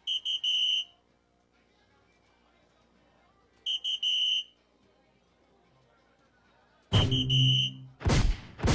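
Electronic soft-tip dartboard sounding its hit tones as darts land: a short run of high electronic beeps right at the start, another about four seconds in, and a longer, fuller one with a low hum from about seven seconds in.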